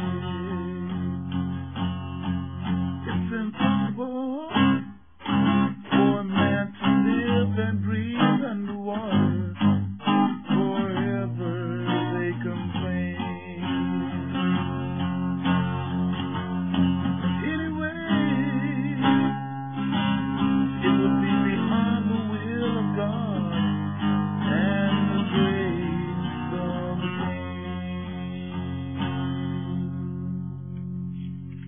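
Solo guitar played alone on an old home tape recording: strummed chords and picked runs, with sharp picked notes between about 3 and 11 seconds in. The sound is dull, with the treble cut off.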